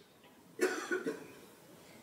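A person coughing: a short run of quick coughs starting just over half a second in and fading out within a second.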